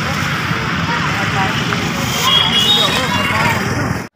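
Busy street-market din: many voices talking over each other at once, with a steady traffic rumble underneath and no one voice standing out.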